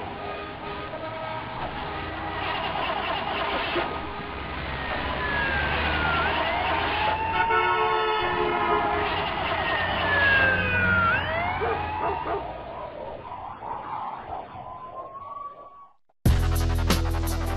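Emergency vehicle sirens wailing, several overlapping and sweeping up and down in pitch over a dense street-noise bed, fading out near the end.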